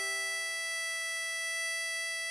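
Tremolo harmonica holding one long, steady blow note, E5 on hole 11, with no bend.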